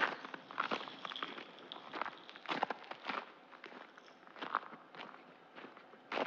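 Faint, irregular clicks and knocks, step-like and unevenly spaced, growing fainter toward the end.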